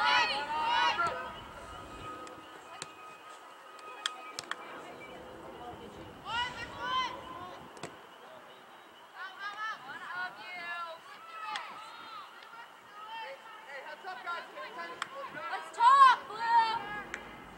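Raised voices calling out in bursts across an open soccer field, high-pitched and shouted, heard near the start, around six seconds in, in several calls about ten seconds in, and again at the end. A few short sharp knocks come about four seconds in.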